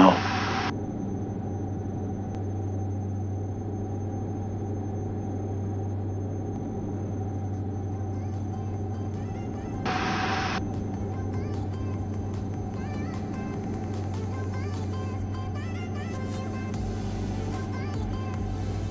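Steady drone of the Diamond DA42-VI's twin turbodiesel engines heard in the cockpit on final approach, with background music. There is a short louder burst about ten seconds in, and a low rumble starts near the end as the wheels touch down on the runway.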